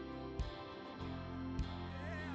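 Live full band playing an instrumental stretch: sustained guitar and keyboard chords with a drum hit about every 1.2 seconds, and the low end swelling about halfway through.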